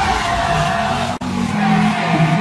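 Electronic dance music at a change of track: gliding, siren-like synth effects over heavy bass that thins out. A split-second gap comes just over a second in, then steady low synth chords begin the next remix.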